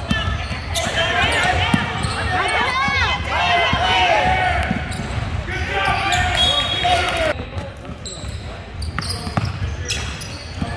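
Basketball game sounds in a reverberant gym: a ball dribbling on the hardwood floor, sneakers squeaking, and the voices of players and spectators. The sound thins out from about seven seconds in.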